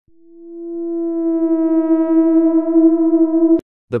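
A steady electronic tone held at one pitch, fading in over about a second, then cut off abruptly with a click about three and a half seconds in.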